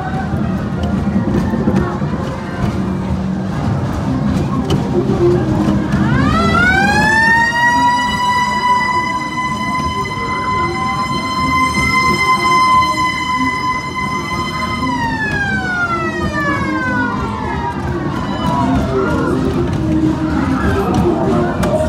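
A siren winds up to a steady high tone about six seconds in, holds it for about eight seconds, then winds down over a few seconds, over a constant crowd murmur.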